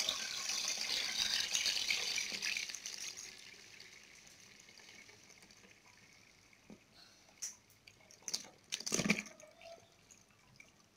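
Dark red zobo (hibiscus drink) being poured from a pot through a plastic sieve, a splashing pour that trails off over the first three seconds. Then a few short wet knocks and plops near the end, the loudest about nine seconds in, as the soaked hibiscus leaves slop out of the pot.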